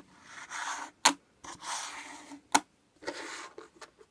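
Silver coins being slid and stacked by hand on a surface: three stretches of scraping, with two sharp clicks of coin on coin about one second and two and a half seconds in.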